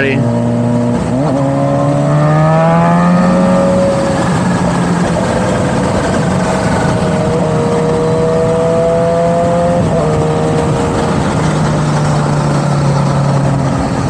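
Motorcycle engine heard from the rider's own seat while under way, over loud wind rush. About a second in, the engine note dips, then climbs steadily for a few seconds as the bike accelerates. It then holds an even cruise and dips briefly again about ten seconds in.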